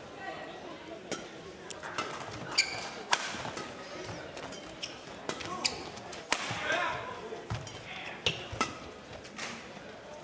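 Badminton rally: sharp racket strikes on the shuttlecock at irregular intervals, about one every second or so, with shoes squeaking on the court surface.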